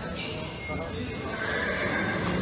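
A horse whinnying, one drawn-out call in the second half, over the murmur of voices in a horse arena.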